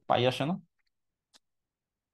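A man's voice speaking a short phrase, then silence broken by one faint click about a second and a half in.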